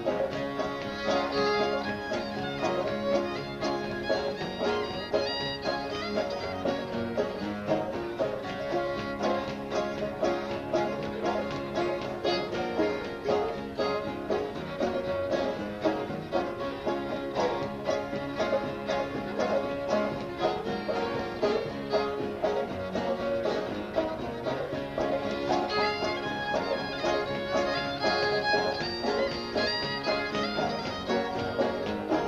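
An old-time fiddle tune played on fiddle and five-string banjo with guitar backing, at a steady, even dance rhythm throughout.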